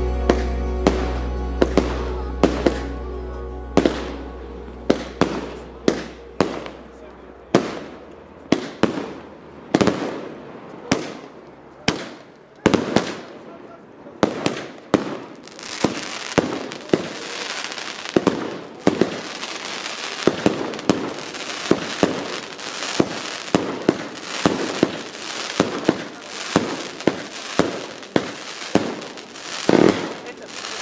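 Aerial fireworks bursting: a run of sharp bangs, one or two a second at first, coming thicker from about halfway with crackling between them. A last low note of music dies away over the first few seconds.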